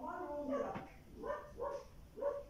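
A dog whining and yipping: one longer call that falls away at its end, then a few short pitched yips.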